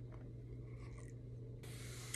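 Quiet room with a steady low hum; near the end a soft rustling noise starts.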